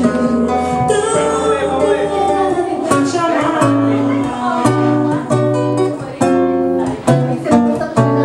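Live acoustic guitar accompanying a woman singing through a microphone and PA. About three seconds in, the guitar settles into a steady rhythmic strum of chords with strong bass notes.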